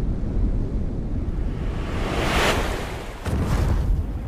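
Deep rumbling, wind-like noise, the atmospheric opening of a stage performance's soundtrack. A whoosh swells about two and a half seconds in, and the sound surges suddenly near the end.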